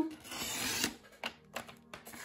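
Artemio sliding paper trimmer cutting through white cardstock: the blade head is drawn along the rail in one stroke lasting a little under a second, a rasping slice that grows slightly louder before it stops. A couple of light clicks from the trimmer follow.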